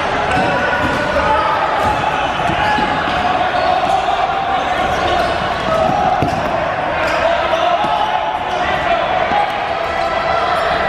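Dodgeballs bouncing and thudding on a hardwood gym floor, with players shouting and calling over one another during play. The impacts come irregularly and the sound echoes in the large gym.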